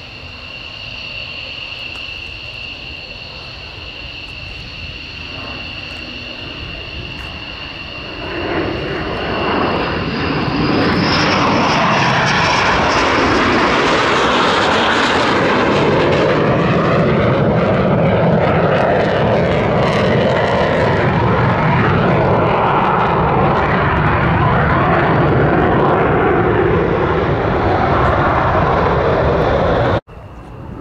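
McDonnell Douglas F-15 Eagle's twin Pratt & Whitney F100 turbofans: a steady high-pitched whine while the jet is still distant, then from about eight seconds in a loud roar that builds and holds as it passes low and climbs away. The roar cuts off suddenly at the end.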